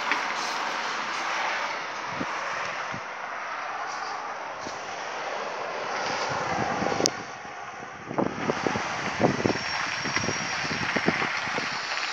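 Steady hiss of city road traffic heard outdoors at night. Irregular crackles and knocks begin about two-thirds of the way in.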